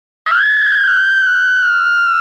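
A high-pitched scream, one long held cry at a nearly steady pitch that drops away sharply at its end.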